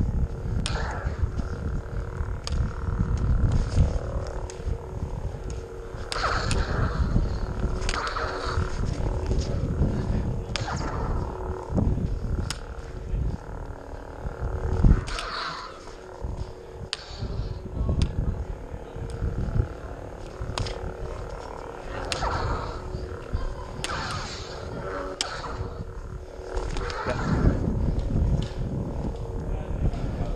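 Lightsaber duel: a steady electronic saber hum, rising and falling swing swooshes, and repeated sharp clacks as the blades clash, over a low rumble of movement and wind on the microphone.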